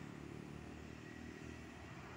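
Faint, steady low rumble of distant road traffic, a motorcycle engine far off down the road.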